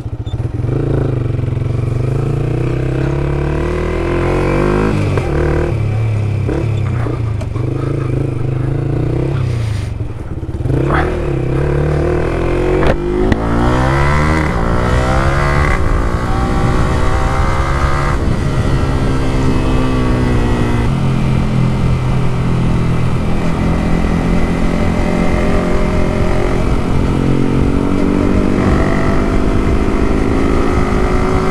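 Sport motorcycle engine heard from the rider's own bike, pulling away and accelerating, its pitch climbing and then stepping down at each gear change several times before settling into steady cruising, with road and wind noise.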